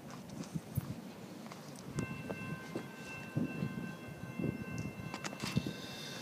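CTA Brown Line rapid-transit train approaching the station from a distance; about two seconds in, a steady high ringing of several pitches at once sets in and holds for a few seconds.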